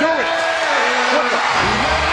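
Arena crowd noise under shouted commentary. About one and a half seconds in, a wrestler's entrance music starts with a deep bass line.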